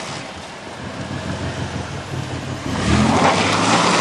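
Minivan engine pulling in reverse through mud. About three seconds in it revs up and a loud rush of spinning tyres and thrown mud spray comes in.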